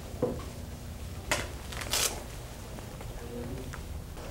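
Quiet classroom room tone with a low hum while students write, broken by a few short rustles and knocks of paper, pens and desks, the loudest two about a second apart in the middle, and a faint murmur of a voice near the end.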